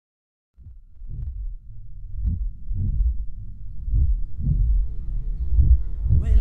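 Muffled, bass-heavy dance-music intro: a kick drum pulsing about twice a second over a low bass tone, fading in after a moment of silence and swelling. Higher notes creep in near the end.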